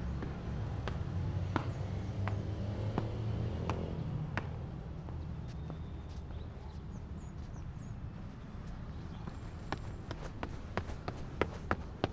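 Footsteps of shoes on concrete stadium stairs, one step about every 0.7 s over a low rumble for the first few seconds. From about ten seconds in there are quicker, sharper steps.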